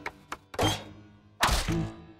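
Cartoon sound effects: a few short ticks, then two loud thunks, one just after half a second in and another about a second later, over the background music.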